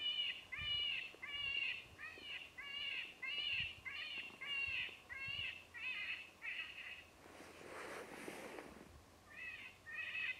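An animal call, a short arched note repeated at an even pace of about one and a half a second. The series stops about seven seconds in and starts again near the end.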